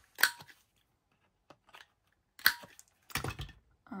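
Handheld corner-rounder punch cutting through embossed cardstock: two sharp clicks, one for each top corner, about two seconds apart. A few light knocks follow near the end.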